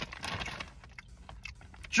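A Flipz chocolate-covered pretzel being chewed with the mouth closed: a run of small, irregular crisp crunches and clicks.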